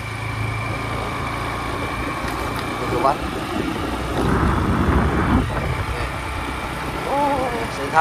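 Small motorcycle engine running steadily while riding along a dirt road, with wind rumbling on the microphone. There is a louder stretch of rumble for about a second and a half, about halfway through.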